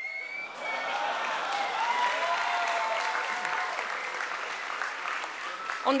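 Audience applauding. The applause swells about half a second in and slowly fades over the next five seconds, with a few voices faintly heard in the crowd.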